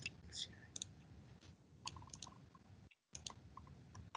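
Faint, scattered clicks of a computer mouse: several short, sharp clicks, some in quick pairs.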